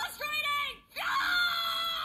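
A cartoon boy's voice yelling in frustration: a short broken cry, then about a second in a long held scream that sags slightly in pitch, heard through a phone's speaker.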